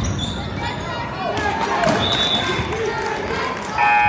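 A basketball bounces on a hardwood gym floor amid voices echoing in the gym, with brief sneaker squeaks. Just before the end the scoreboard horn starts, a loud steady buzz.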